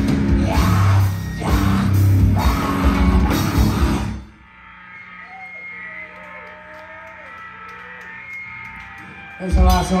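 Live grindcore band at full volume: drums, distorted guitar and bass in a dense wall of sound that stops abruptly about four seconds in as the song ends. Then a steady amplifier hum with faint sounds from the room, until a loud burst just before the end.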